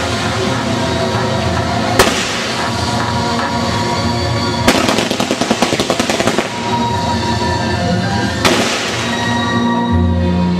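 Waltz music with fireworks going off over it: a sharp bang about two seconds in, a rapid string of crackling pops from about five to six and a half seconds, and another bang near the end.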